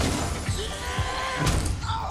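Movie sound effect of a body slamming into a glass window: a sudden crash followed by crackling as the glass cracks into a spiderweb, then a second sharp hit about a second and a half in.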